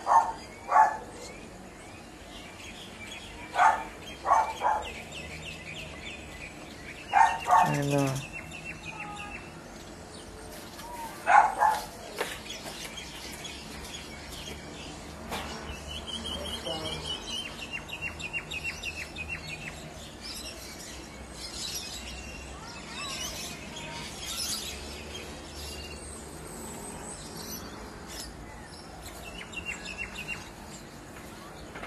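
Birds calling in the trees: loud, short calls in clusters through the first twelve seconds or so, then a thinner, higher run of repeated notes from about fifteen to twenty seconds in.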